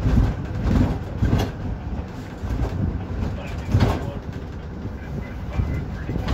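Road rumble inside the back of a moving ambulance: a steady low drone with several sharp knocks and rattles from the vehicle body as it goes over the road, the loudest about four seconds in.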